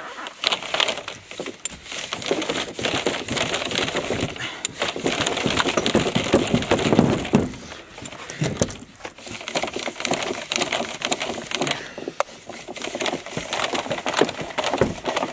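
Stiff black polyethylene well pipe being forced and worked onto a submersible pump's brass barbed adapter: irregular crackling, creaking and rubbing of plastic, busiest about halfway through.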